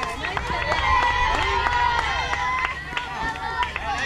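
Several young girls' voices shouting and calling out over one another, high-pitched and overlapping, some calls held for a second or more, with a few sharp knocks among them.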